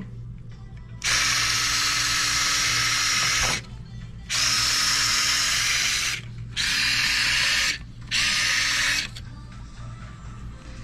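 Surgical power driver running in four bursts of a few seconds each, with short pauses between them, driving a looped guide wire all the way through the foot bone. This is the first step of making the bone tunnel for the tendon transfer, before it is drilled over with a cannulated drill.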